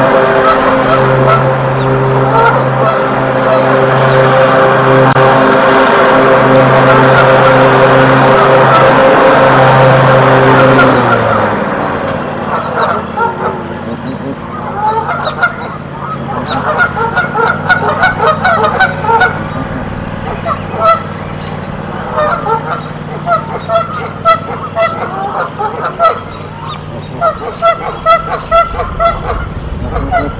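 Canada geese honking repeatedly in short, irregular bouts. For about the first eleven seconds they sit under a loud steady droning hum that then stops.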